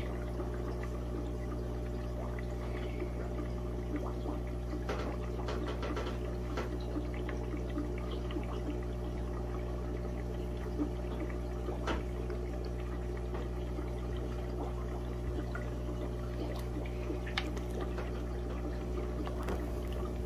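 Aquarium water pouring and trickling steadily over a low constant hum, with a few faint clicks.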